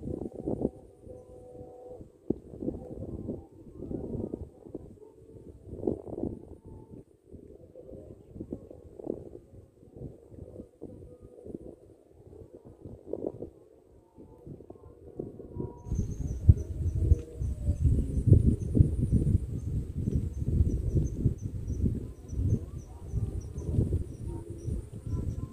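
Wind buffeting the microphone in irregular gusts, getting louder about two-thirds of the way in. From the same moment a faint, quick series of high-pitched chirps runs underneath.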